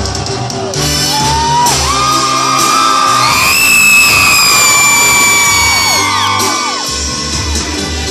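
Live banda sinaloense music played through the concert PA, under a crowd of fans screaming and whooping. Several long high screams rise about two seconds in, swell to the loudest point, then trail off one by one near the end.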